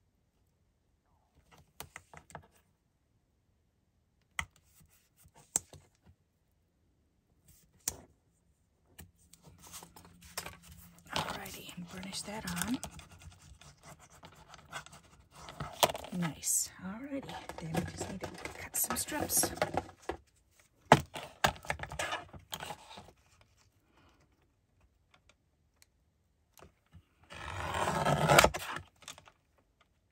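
Double-sided tape being pulled off its roll, torn and pressed onto paper by hand, with paper rustling and scraping on a cutting mat: scattered small clicks at first, busier handling in the middle, and a louder ripping rustle about a second long near the end.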